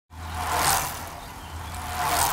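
Logo-sting whoosh sound effect: a swell of rushing noise that rises and fades, with a second whoosh starting near the end, over a low steady hum.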